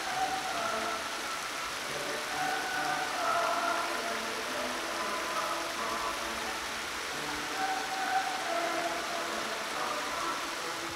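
Steady splashing and hiss of many small fountain jets falling into a shallow basin, with soft background music of held notes over it.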